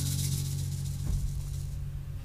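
Final acoustic guitar chord ringing out and slowly fading as the song ends. A hand shaker rattles softly over it and stops shortly before the end.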